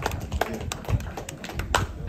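Scattered sharp taps and knocks at an uneven pace, the loudest near the end.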